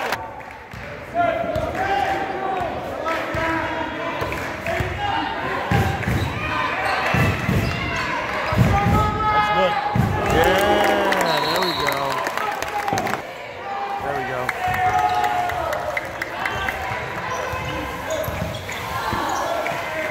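A basketball dribbled on a hardwood gym floor during live play, with sneakers squeaking and voices calling out across the court, all echoing in a large gymnasium.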